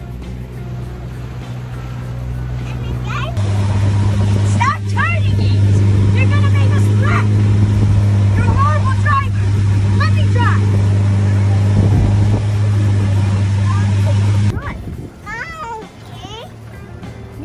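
Motorboat engine running at speed with a steady drone, over water rushing along the hull, and children's voices calling out over it. The drone gets much louder about three seconds in and drops away shortly before the end.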